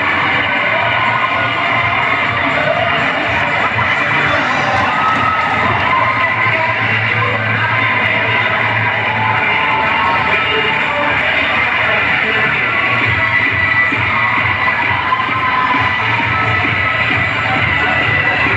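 Dance music playing loudly and without a break, with a crowd of school students cheering and shouting over it throughout.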